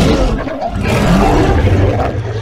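A large monster's roar sound effect, loud and drawn out, with a deep rumble underneath.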